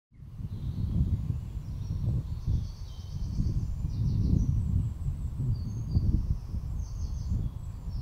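Wind buffeting the microphone as a low, unsteady rumble, with faint birdsong: short high trills several times through it.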